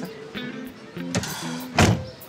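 Background music with a steady melody, and one loud, short slam near the end: a door being shut hard.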